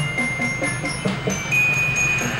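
Glockenspiel played with mallets, picking out a ringing melody of bright metallic notes, with a bass drum beating an even rhythm underneath.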